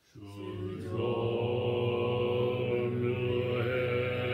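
Buddhist chanting in a low monotone, held on one steady pitch, starting abruptly just after the start.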